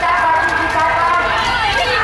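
A group of children's voices shouting and calling out together as they run, with some long held calls overlapping.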